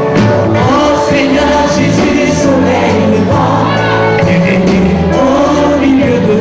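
Live gospel band playing, with a group of voices singing over it and a steady drum beat.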